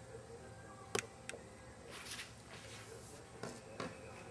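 Quiet room tone with a few faint, sharp clicks, about a second in and again near the end, and brief soft rustles in between.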